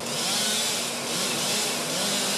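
Chainsaw running steadily as it cuts through fallen tree limbs.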